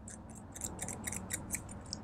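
Small blunt scissors snipping at a ribbon, a quick run of short snips, several a second.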